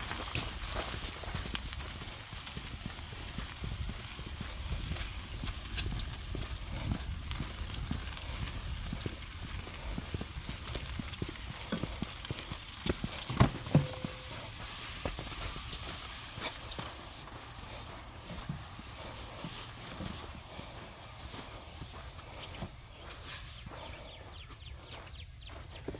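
A wheelbarrow loaded with rolls of sod being pushed along on foot: irregular crunching and clattering of the wheel, frame and footsteps over gravel, with a couple of loud knocks about halfway through. The sound grows quieter in the last part as it rolls onto soft sand.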